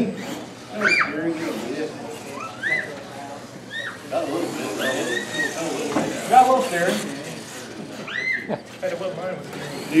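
R/C monster truck's electric motor whining in short throttle bursts, each a quick rise and fall in pitch, several times, with people talking in the background.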